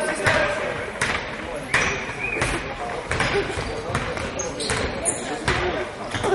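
A basketball being dribbled on a wooden court, one bounce about every three-quarters of a second, over spectators' chatter.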